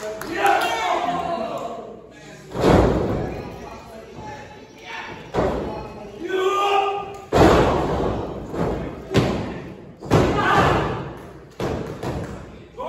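Wrestlers' bodies slamming onto the canvas of a wrestling ring: about five heavy thuds with a boom from the ring boards. The loudest come about two and a half seconds in and about seven seconds in, the latter as a dive from the top rope lands.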